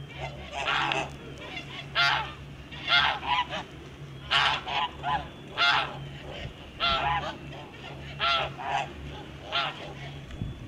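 Kholmogory geese honking: short calls, one or two a second at irregular intervals, sometimes two or three in quick succession.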